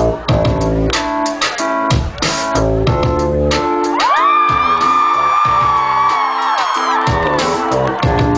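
Live pop-band music over a concert PA: a dance beat with bass and drum hits. About halfway through, the drums drop out and a high note slides up and is held for about three seconds, then the beat comes back near the end.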